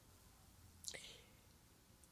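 Near silence in a pause between sentences, broken about a second in by one short, faint breath drawn in by the speaker.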